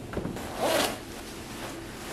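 A clothing zipper pulled open in one quick rasping stroke, just after a couple of light knocks.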